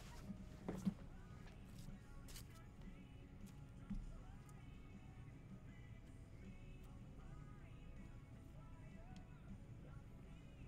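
Faint background music, with a few soft clicks and a low bump about four seconds in from hands handling a trading card and its holder.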